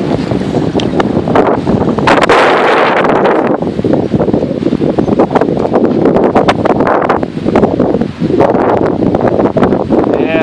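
Heavy wind buffeting the microphone of an off-road vehicle riding a rough dirt trail, with the vehicle's running noise and frequent knocks and rattles from bumps.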